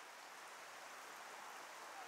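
Faint, steady outdoor background noise: an even hiss with no distinct events.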